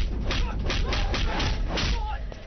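Film fight sound effects: a rapid run of sharp punch and hit impacts, about eight in two seconds, with shouts and background music underneath.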